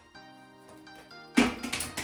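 Soft background music with plucked, harp-like notes. About a second and a half in, a loud scratchy noise lasting about half a second covers the music.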